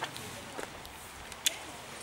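A single sharp click about one and a half seconds in, over faint rustling.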